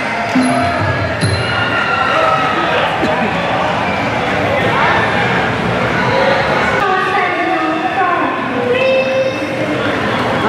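Voices and music in a large arena hall, over a steady bed of crowd noise.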